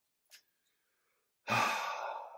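A single long, breathy sigh that starts about a second and a half in and fades away.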